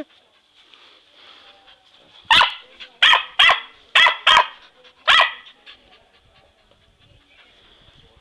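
English Cocker Spaniel barking excitedly at a balloon: six sharp barks over about three seconds, the middle four coming in quick pairs.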